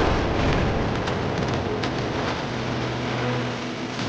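Film sound effects of wooden boards smashing and splintering debris falling: a dense crashing noise with scattered sharp cracks that gradually dies away.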